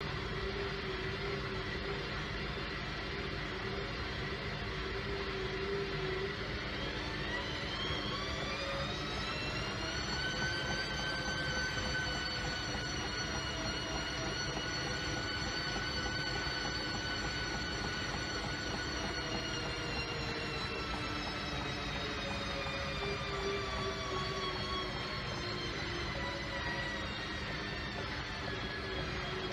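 Front-loading washing machine running with its drum turning, a steady wash noise under a motor whine that rises in pitch about eight seconds in, holds steady for about ten seconds, then slowly falls away.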